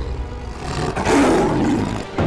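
A loud, beast-like roar that swells about a second in and holds.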